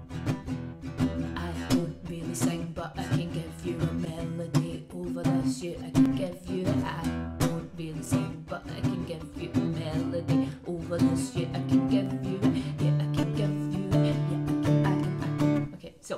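Acoustic guitar strummed in a steady rhythm as a song excerpt, with held low notes under the chords.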